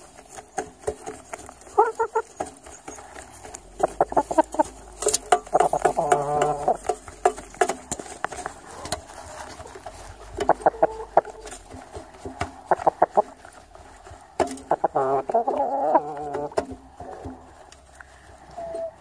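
Chickens clucking: repeated runs of short calls, with a couple of longer, wavering calls, and scattered sharp clicks between them.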